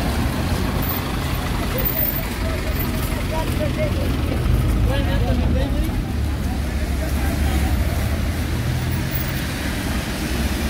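Steady low rumble of street traffic: minibus and car engines running on a slushy road. Indistinct voices come through a few seconds in.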